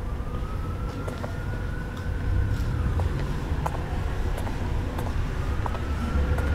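Distant siren wailing slowly up and down over a low city traffic rumble, with a steady hum beneath and a few sharp ticks.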